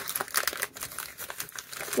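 Foil wrapper of a Pokémon booster pack crinkling in irregular crackles as it is handled and the cards are pulled out of it.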